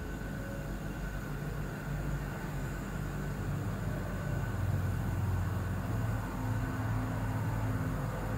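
Steady low background rumble and hum, swelling slightly about halfway through, with a faint high steady tone above it.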